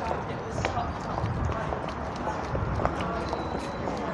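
Footsteps on brick paving at a walking pace, with faint, indistinct voices in the background.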